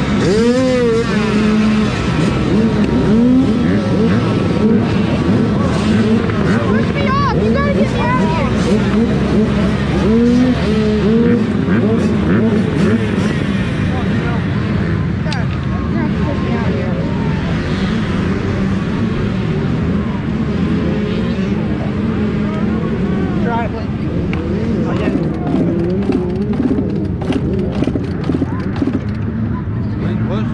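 Dirt bike engines running loudly, with repeated revs whose pitch rises and falls.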